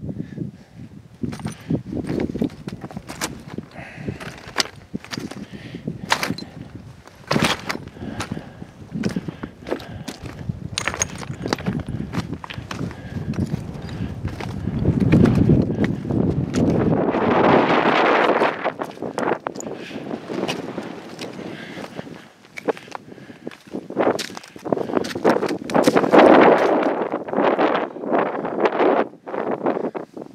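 Footsteps crunching and scuffing on loose rock and scree, with wind gusting on the microphone about halfway through and again near the end.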